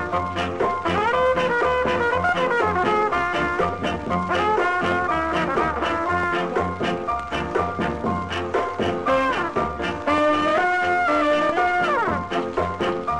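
Ska instrumental played from an original 1965 vinyl 45 single: a horn section plays held and sliding lines over a steady, driving beat, with the record's surface crackle underneath.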